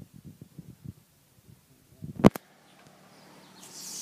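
Hens clucking softly in short, low bursts, then a single sharp knock about two seconds in. After it comes a rising swish of foliage brushing past.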